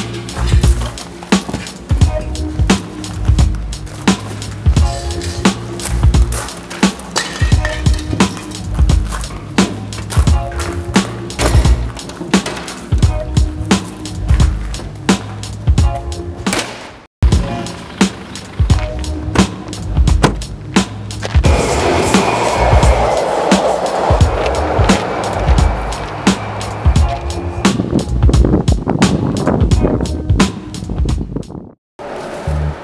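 Music track with a steady, heavy beat and a bass line, cutting out for a moment about 17 seconds in; a hissing layer rises over it for several seconds in the second half.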